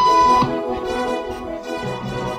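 A single steady electronic beep about half a second long, the tone that signals the people in the waiting room to stand up, over sustained background music.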